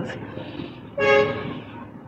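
A single short, steady horn-like toot about a second in, lasting about half a second, over faint background hiss.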